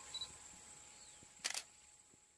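Faint outdoor background under a steady thin high whine, with a quick burst of sharp clicks about a second and a half in.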